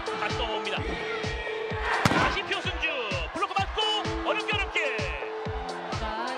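Volleyball arena atmosphere: a steady thumping beat of about three per second, with held cheer tones over it. Sneaker soles squeak on the indoor court several times, and a single sharp ball strike comes about two seconds in.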